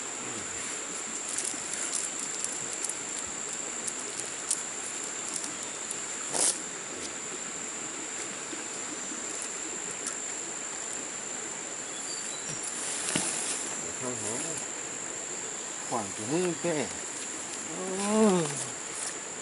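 Steady high-pitched insect drone, with a short sharp clank about six seconds in and another near thirteen seconds. Voices come in over the last few seconds.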